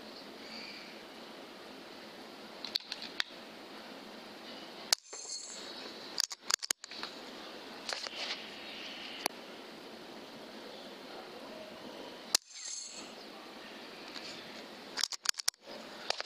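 Faint steady hiss with scattered sharp clicks and knocks, the two loudest about five seconds in and about three-quarters through.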